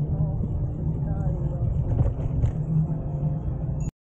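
Wind noise on the microphone of a camera riding on a moving bicycle, with faint voices underneath. The sound cuts off suddenly near the end.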